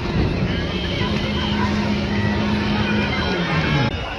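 Rally car engine revving up in the first second, holding high revs steadily, then dropping off near the end, over crowd chatter.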